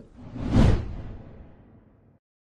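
News-bulletin transition whoosh sound effect with a low rumble under it. It swells to a peak in about half a second, then fades away over the next second and a half.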